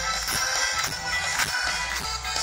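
Live pop band playing amplified through the stage PA, heard from within an outdoor concert crowd, with a steady beat and a strong bass.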